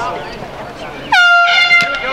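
A loud horn blast about a second in, holding one steady pitch for just under a second after a short drop at its start, following players' shouts on the field.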